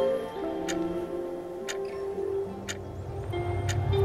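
A clock ticking about once a second over soft, slow music, with a low swell building toward the end.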